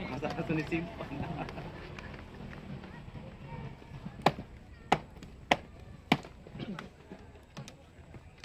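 A man's voice in the first second, then faint voices in the background, broken by four sharp smacks about 0.6 s apart in the middle and a few fainter ones after.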